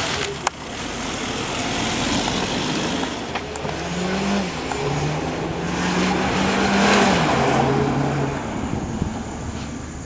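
Audi A1 hatchback driven hard through a tight barrier course, its engine note holding and changing pitch in steps as it is worked through the bends, with tyre noise swelling as the car passes closest, loudest about seven seconds in. A single sharp click about half a second in.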